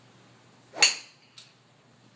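A golf driver striking a ball: one sharp, loud crack a little under a second in, followed about half a second later by a much fainter knock as the ball hits a tree.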